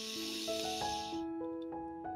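Soft background music of slow, sustained keyboard notes, with a breath heard as a hiss for about the first second.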